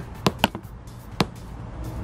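Car speaker playing a polarity test signal: sharp clicks, two close together near the start and another a little past a second in, part of a pulse train at roughly one a second.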